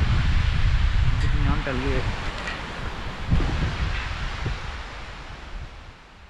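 Wind buffeting the camera microphone, heard as a steady rumble over a background hiss, with a brief faint voice about a second and a half in. The sound fades out steadily over the last few seconds.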